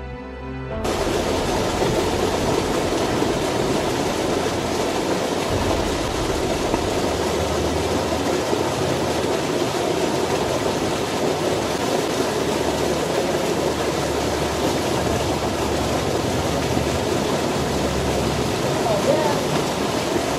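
Creek water rushing over a shallow riffle, a steady, even noise that replaces music about a second in.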